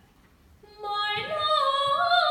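A woman's trained classical singing voice in a song: after a brief near-silent break, she comes back in about three-quarters of a second in on a held note that then steps up in pitch.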